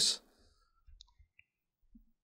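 Near silence in a pause in conversation, with two or three faint, brief clicks about a second in.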